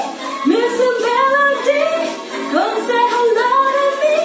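A woman singing, holding long notes that slide up and down between pitches, with brief breaths between phrases.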